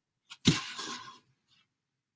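A short breathy sound from a person, starting about half a second in and lasting well under a second, with a fainter breath just after.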